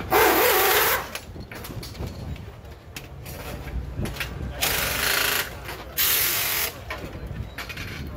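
Pneumatic impact wrench on a motorcycle's rear axle nut during a pit-stop wheel change, fired in three short bursts of under a second each: one at the start and two close together later on.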